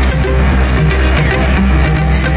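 Loud live electronic music from a Eurorack modular synthesizer, a deep sustained bass line under shifting pitched notes, with drums.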